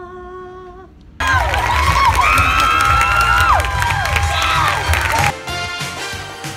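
A woman sings one held note for about a second. Then a crowd cheers and whoops loudly for about four seconds, with many voices rising and falling together. Music comes in near the end.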